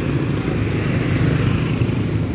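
Street traffic: small motor scooters and motorcycles riding past close by, their engines making a steady, continuous drone.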